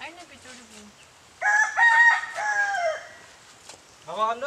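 A rooster crowing once, starting about a second and a half in and lasting about a second and a half, its last note long and falling at the end.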